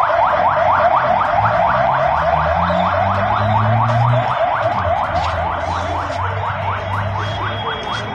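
Car alarm going off: an electronic siren whooping rapidly upward, about five times a second, over and over.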